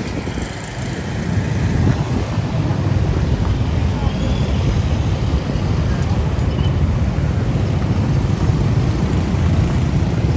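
City street traffic noise, a steady low rumble of road vehicles, with voices in the background.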